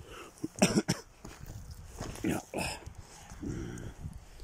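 A man coughing and clearing his throat in several short bursts, the loudest just under a second in.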